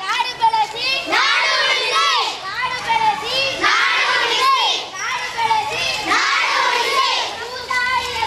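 A group of children shouting slogans together in short repeated phrases, many high voices at once.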